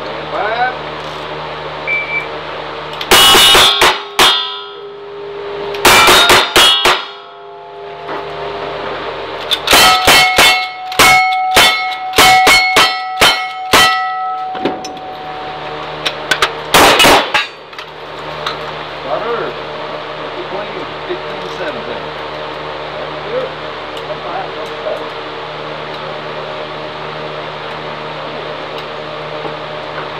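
Cowboy action shooting stage: a string of gunshots in four bursts, a few shots at about 3 s and 6 s, a rapid run from about 10 to 14 s, and a last pair near 17 s. Steel targets ring after the hits, clear tones that hang on for a second or more.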